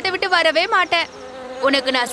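Houseflies buzzing, a cartoon sound effect, under a character's voice; the buzz is heard on its own for about half a second in the middle, between two lines of speech.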